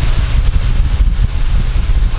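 Wind noise from an electric stand fan on its highest setting blowing straight onto a DJI FM-15 FlexiMic external microphone. It is a loud, uneven low rumble of buffeting on the mic, over a steady hiss of rushing air.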